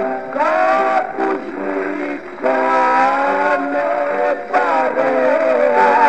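Man singing a Greek rebetiko song in long, wavering, ornamented phrases over instrumental accompaniment, on an old recording that lacks the highest frequencies.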